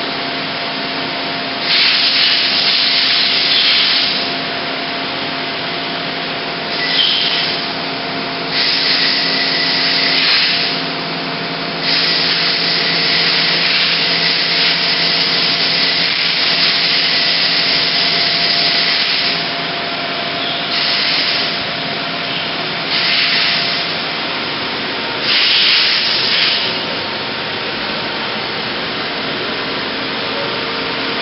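Mori Seiki SL25B CNC lathe running: a steady hum with several fixed tones, broken every few seconds by hissing bursts. Most bursts last one or two seconds; the longest begins about twelve seconds in and lasts about seven.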